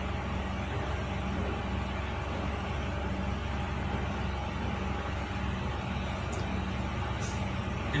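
Steady background drone: an even rumbling noise with a low, unchanging hum, no change or event through the pause.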